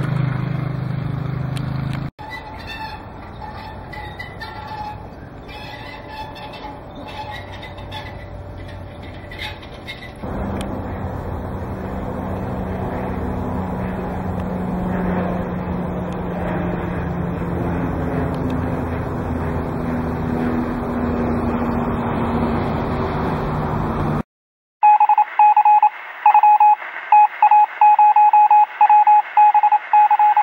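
A light propeller airplane flying overhead, its engine drone steady with a slowly shifting pitch for about fourteen seconds. Before it, a motor engine hum cuts off about two seconds in, followed by quieter background; after a short silence near the end comes a string of loud electronic beeps at one pitch.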